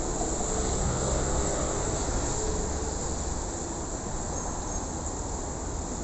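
Road traffic at a city junction: a steady rumble of passing cars and trucks.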